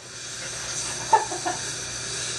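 A few short, stifled laughs over a steady hiss.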